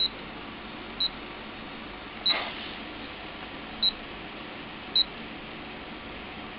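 Handheld multi-function anemometer beeping as its buttons are pressed to change the unit: five short, high beeps at uneven intervals.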